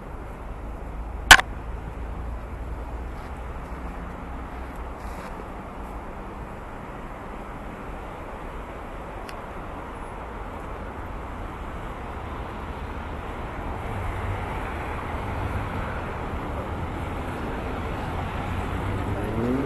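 Steady hum of road traffic, growing louder near the end, with a single sharp click about a second in.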